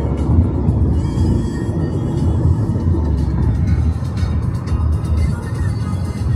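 Steady road and engine rumble heard from inside a moving car, with music playing along with it.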